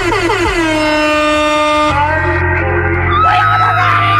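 The opening of a hip-hop track playing over the car radio: a horn-like tone glides down in pitch and settles into a held note, then a steady bass comes in about two seconds in.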